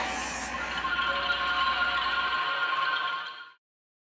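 Logo sound effect ringing out: a sustained synthesized chord that fades away to silence about three and a half seconds in.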